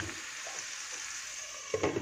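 Halved cherry tomatoes and garlic frying in olive oil in an aluminium pan, a steady sizzle. Near the end there is a brief knock as a glass lid is set on the pan.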